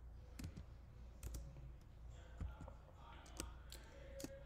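Faint, irregular clicking from a computer keyboard: a handful of separate key presses over a low room hum.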